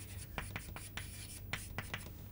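Chalk on a chalkboard as lines are drawn and letters written: a quick, irregular series of short scrapes and taps.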